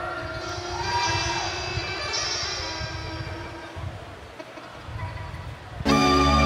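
Electric guitar playing soft held notes and chords that fade away about four seconds in. Just before the end, the band's next song starts abruptly and much louder.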